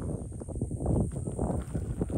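Footsteps through tall grass and brush: a quick, uneven run of soft low thumps and rustles.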